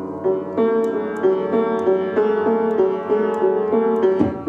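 Upright piano played in a repeated figure: notes struck about three times a second, alternating between two neighbouring pitches over a held lower note. The piano is out of tune.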